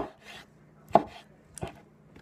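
Heavy 8-inch, quarter-inch-thick bowie knife chopping tomatoes on a wooden cutting board: three sharp knocks of the blade through the tomato onto the board, the loudest at the start and about a second in, a fainter one shortly after.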